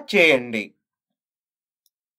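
A narrator's voice finishing a phrase in the first moment, then dead digital silence for the rest.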